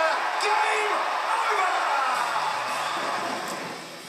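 Excited commentators' voices shouting and whooping over a crowd cheering a goal, played through a TV speaker. The sound fades away near the end.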